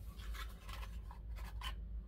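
A stack of trading cards being slid out of a small paperboard tuck box: faint scraping and rustling of card stock against cardboard, with a few light clicks.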